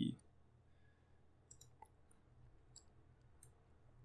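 Faint computer mouse clicks: a string of short, sharp ticks, irregularly spaced, starting about one and a half seconds in.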